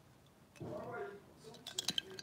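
A brief low murmur of a voice about half a second in, then a few light glass clinks near the end as a drinking glass is handled.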